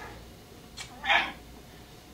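A man's short, strained cough about a second in, his throat burning from a bite of ghost pepper.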